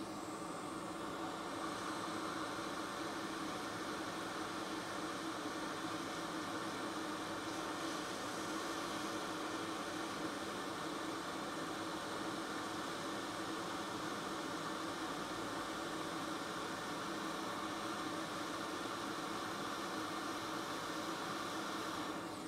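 Hot air rework station blowing at a low airflow setting, a steady hiss with a faint hum, as hot air at about 380 °C reflows solder on corroded surface-mount components.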